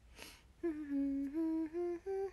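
A woman humming a short melody. A quick breath comes first, then a run of held notes that step up and down.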